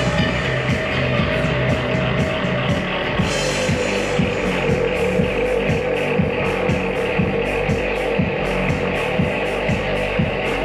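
Live band music with electric guitar and keyboard over a steady, evenly repeating beat. A held tone drops a step in pitch about three to four seconds in.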